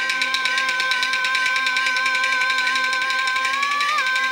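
A Peking Opera elder-woman (Lao Dan) singer holding one long sung note with a slight waver, rising a little near the end. Under it runs steady instrumental accompaniment with a rapid, even pulsing.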